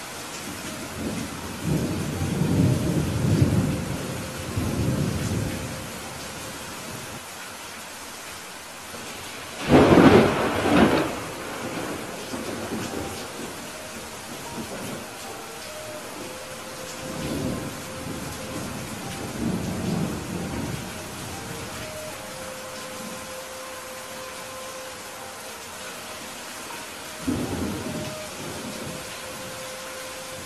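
Steady rain with rolls of thunder: a low rumble in the first few seconds, a loud, sharper peal about ten seconds in that is the loudest sound, then softer rumbles later on and another one near the end.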